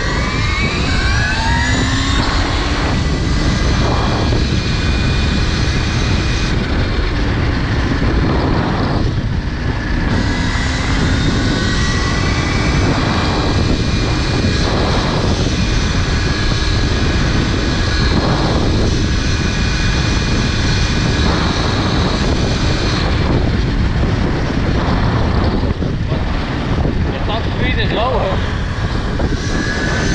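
KTM Freeride E-XC electric dirt bike's motor whining under full throttle. Its pitch climbs over the first couple of seconds, then holds steady at speed, over a loud steady rush of wind and road noise.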